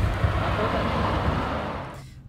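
Steady outdoor rumble and rush of noise, heaviest in the low end, easing off near the end.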